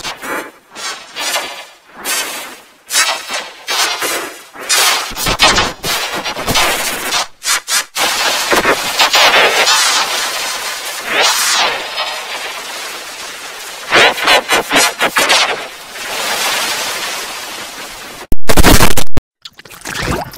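Heavily distorted, effects-processed audio, a harsh crackling noise that keeps cutting in and out, with a couple of sweeping pitch glides in the middle. It ends in a very loud clipped blast of under a second, shortly before the end.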